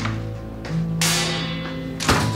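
Dramatic background score: sustained low held notes, with a single struck, ringing accent about halfway through that slowly fades.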